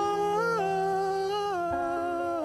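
Song vocal holding a long sung note over soft, sustained accompaniment. The note steps up about half a second in, drops back near the end, and a low note holds underneath.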